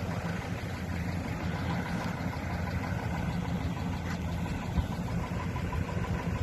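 Pickup truck engine idling steadily close by.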